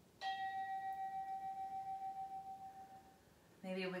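A single meditation bell chime, struck once just after the start: one clear ringing tone with fainter higher overtones, fading out over about three seconds.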